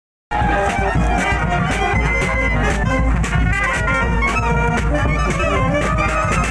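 Marching brass band playing a tune, horns with sharp percussion hits throughout. The sound drops out for a split second at the very start.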